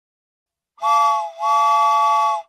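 Steam locomotive whistle, a chord of several steady tones, blown twice: a short blast just under a second in, then a longer one of about a second.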